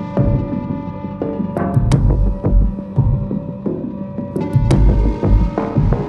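Dark orchestral-electronic film-score music: a throbbing low pulse repeats under steady held drone tones. Two pairs of sharp clicking hits cut through, one about a second and a half in and one near the five-second mark.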